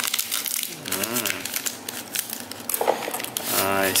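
Plastic noodle packet crinkling and rustling as it is cut open with scissors and handled, with short sharp crackles throughout.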